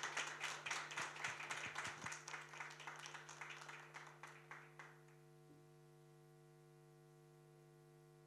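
Audience applauding, the clapping thinning out and dying away about five seconds in, leaving a steady electrical hum.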